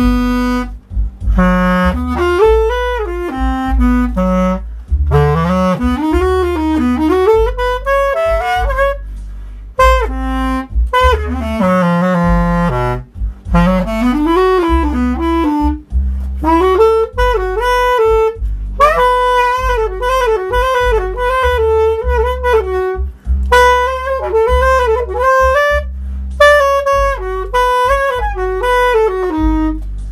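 Clarinet improvising a jazz-blues solo in phrases with pitch slides and bends and short pauses between them, over a backing track with a stepping bass line.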